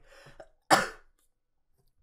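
A man coughs once into the crook of his elbow, a single short, sharp cough about two-thirds of a second in.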